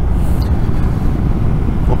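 Steady wind rush on the microphone mixed with the road and engine noise of a BMW R 1250 GS motorcycle riding at road speed. The noise is loud and mostly low, with no distinct engine note standing out.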